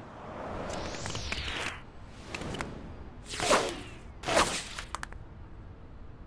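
Cartoon whoosh sound effects of a character speeding off in super-fast shoes: a rush of air that rises and then falls in pitch, followed by three short swishes about a second apart.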